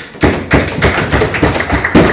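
A small group applauding, with many quick irregular claps or raps overlapping, right after a speech ends with "thank you".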